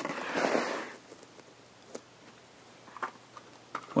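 Plastic blister-packed toy cars on cardboard backing cards being handled and moved: a brief rustle lasting about a second, then a few light taps.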